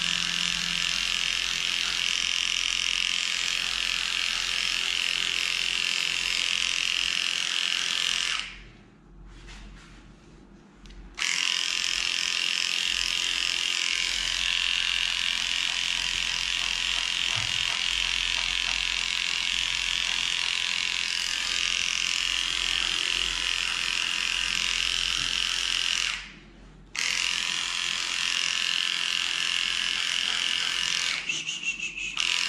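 Electric dog grooming clipper running with a steady high buzz as it shaves through a matted coat. It goes quiet twice, for a couple of seconds about eight seconds in and briefly near the end.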